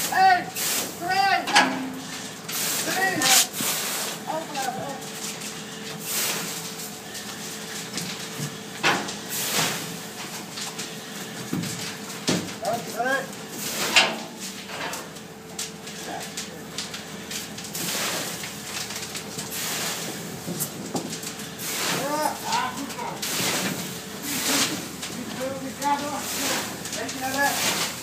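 Muffled voices of firefighters talking through breathing-apparatus face masks, broken by irregular short hisses and knocks, with a faint steady tone underneath.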